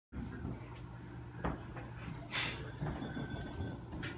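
Steady low electric hum of aquarium equipment, with a few sharp knocks and a short loud rustle about two and a half seconds in from the camera being handled.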